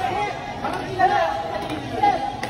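Indistinct chatter of several voices in a large indoor sports hall.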